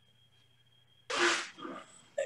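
A single short, sharp burst of breath noise from a person about a second in, followed by a fainter breath, heard over a video-call line. The rest is near silence.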